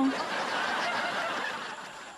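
Canned audience laughter from a sitcom laugh track, coming in suddenly, holding for about a second, then fading away near the end.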